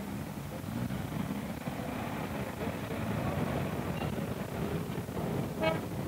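Street noise: steady traffic with faint, indistinct voices in the background.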